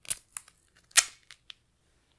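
Duct tape being handled and torn: two sharp rips about a second apart, the second the louder, with small crinkles and clicks between.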